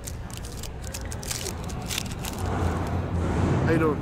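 Plastic trading-card pack wrapper crinkling as it is torn open and pulled off the cards: a quick run of crisp rustles in the first two seconds, over background chatter.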